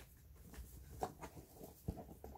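Faint rustling as items are handled inside a fabric backpack, with a couple of light knocks: one about a second in and a low thump near the end.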